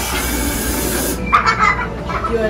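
A loud rushing hiss of air that cuts off after about a second, followed by a short high-pitched squeal.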